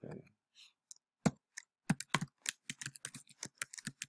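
Typing on a computer keyboard: a quick, irregular run of keystrokes that starts about a second in.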